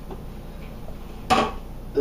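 Hands kneading raw ground pork and sausage in a bowl, a faint soft squishing. About a second and a half in there is a short, loud vocal sound from the man.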